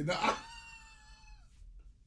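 A man's high-pitched, drawn-out squeal, held for over a second and dipping slightly at the end, as he breaks into laughter.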